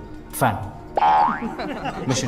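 A short, rising, springy 'boing' sound effect about a second in, the loudest sound here, over film dialogue and a background music score.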